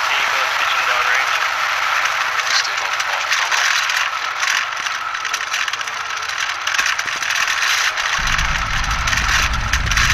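Voices of onlookers over a mid-pitched hiss. About eight seconds in, the deep rumble of the Falcon 9's nine Merlin first-stage engines arrives suddenly and keeps going, the launch sound reaching the distant viewers well after liftoff.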